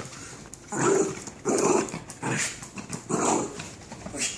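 A West Highland white terrier barking four times at a steady pace, under a second apart, in play.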